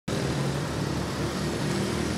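Steady motor-vehicle noise: an engine running with a low, wavering hum over a constant background rush, with no sharp events.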